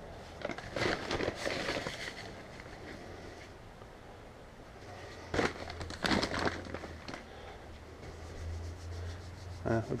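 Rustling and scraping of dry kelp meal being scooped from a paper bag with a plastic cup, in two bouts a few seconds apart, the second opening with a sharp knock, over a low steady hum.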